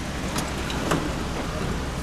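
Street traffic noise, a steady low rumble with a hiss over it, broken by two sharp clicks about half a second and a second in, the second the louder.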